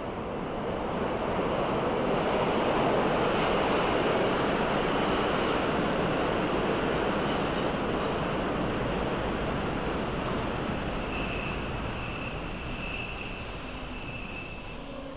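A steady rushing noise that swells over the first few seconds and then slowly fades away. A few faint, short high tones come through near the end.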